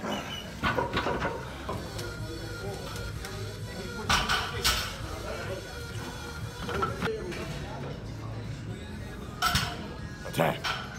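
Background music under gym noise: brief loud vocal bursts and metal clinks of weight equipment, about four seconds in and again near the end.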